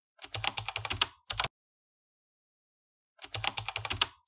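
Typing sound effect: a quick run of key clicks lasting about a second, then a single keystroke, a pause of nearly two seconds, and another quick run of key clicks near the end.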